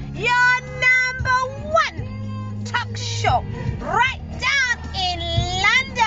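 Music with a high singing voice that swoops up and down in long glides, over a steady low hum.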